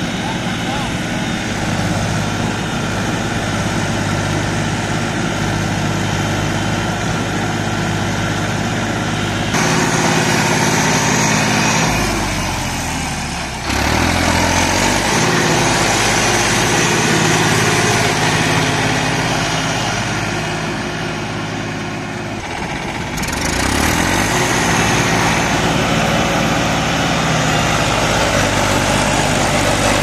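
Mahindra diesel tractor engines running hard under load as a tractor on cage wheels strains to get out of deep mud while another tractor tows it. The engines rev up about ten seconds in, drop briefly a few seconds later, ease off near two-thirds of the way through and rev up again.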